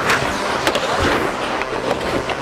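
Ice hockey skates scraping and carving on rink ice during a scramble in front of the net, with a few sharp knocks.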